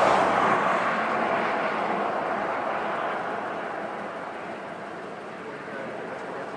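A steady rushing noise, loudest at the start and slowly fading over the next few seconds.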